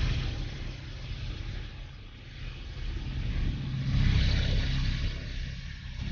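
Low rumbling drone from the programme's atmospheric sound bed, swelling and ebbing twice, with a hissing wash that rises about four seconds in.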